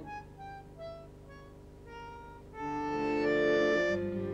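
Bandoneon playing a quiet solo line of single held notes, then swelling about two and a half seconds in to louder sustained chords.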